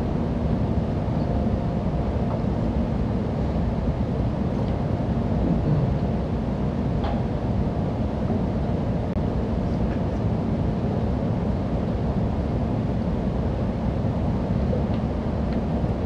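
Steady low rumble of lecture-room background noise, with a couple of faint clicks about halfway through.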